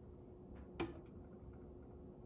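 Faint steady hum of a benchtop magnetic stirrer, with one light click of glassware just under a second in and a couple of fainter ticks right after.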